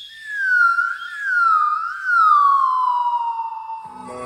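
A single whistling tone gliding slowly downward over about four seconds, with two brief upward wobbles along the way.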